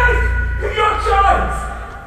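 A singer's voice holding pitched notes over a steady low rumble, dying away near the end.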